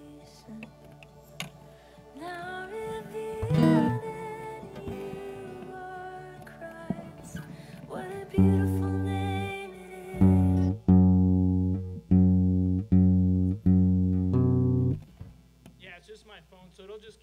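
Musicians warming up on stage: scattered guitar notes and plucks, then from about halfway a keyboard sounding a run of about seven loud, held low chords, each cut off abruptly.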